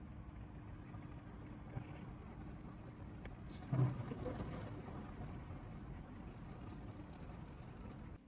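Faint low rumble of room noise with a faint steady hum, and a brief louder sound about four seconds in.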